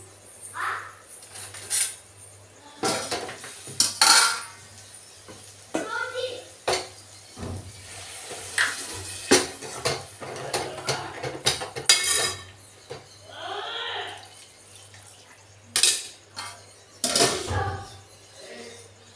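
An aluminium cooking pot and its lid clanking while a spoon stirs and scrapes in the pot: a series of sharp metal clinks and knocks.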